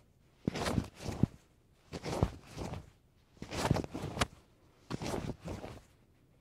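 Martial-arts uniform fabric swishing and snapping as a high block and then a high punch are thrown, four times about a second and a half apart, each repetition making two quick swishes.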